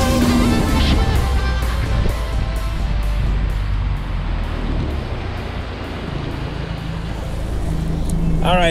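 Background music fading out over the first couple of seconds, leaving a Mercury outboard motor running at high throttle (about 5,700 RPM) on a small aluminium bass boat, with wind and water rushing past. The engine rumble gets quieter in the last few seconds.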